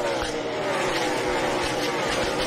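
Several NASCAR Cup stock cars' V8 engines running flat out together in a pack. Their engine notes overlap and glide slightly downward in pitch.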